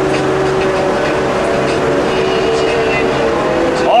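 Bus engine and road noise heard from inside the cab while driving through a highway tunnel: a steady drone with a few held tones. A man's voice starts right at the end.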